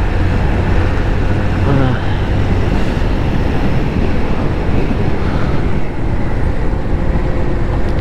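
Motorcycle riding along a road: steady engine hum under loud rushing wind noise on the microphone.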